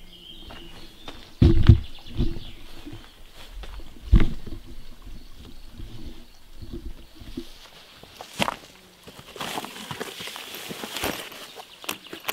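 Footsteps on grass with a few dull thumps of handling in the first four seconds. Near the end comes a click, then a rustling of fabric as the folded solar panel's cloth case is handled.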